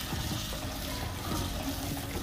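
Ground moong dal paste sizzling in ghee in a steel kadai while it is stirred and roasted with a spatula, a steady frying hiss.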